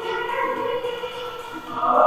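Choir singing a hymn in long held notes, with a louder phrase swelling in near the end.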